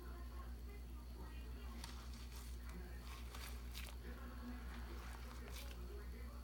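Bath water lightly splashing and dripping, in several short bursts from about two seconds in, as a hand moves a crumbling bath bomb in the tub. Under it runs a steady low hum with faint background voices.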